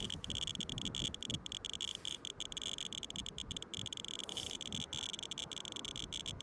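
RadiaCode-102 scintillation radiation detector giving its audible count-rate clicks, so fast and dense they merge into a high, crackling buzz with irregular gaps. The detector is held on uranium-bearing copper shale, and the elevated reading is climbing.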